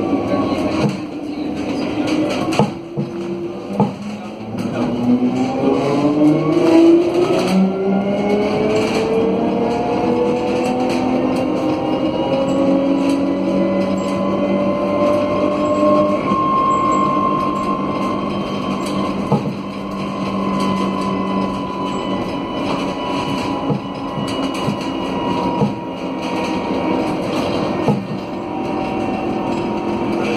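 Traction motors of an Alstom Aptis battery-electric bus whining as it accelerates, several tones climbing together in pitch for about ten seconds, then levelling off at a steady cruising whine. Knocks and rattles are heard from inside the bus, over road noise.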